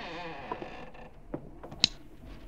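Radio-drama sound effect of a door creaking open, followed by a few sharp knocks, the loudest near the end.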